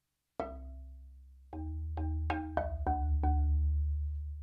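Solo marimba played with soft yarn mallets: one struck chord about half a second in that rings and fades, then from about a second and a half in a deep bass note that keeps ringing under a quick run of six or so notes.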